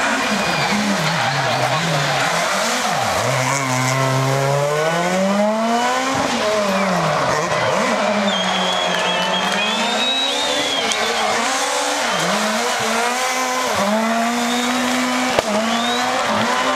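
Rally car engine revving hard and falling back again and again as the car slides sideways round a dusty paved square. Its pitch swings up and down with the throttle and sharp gear changes, with tyre squeal mixed in.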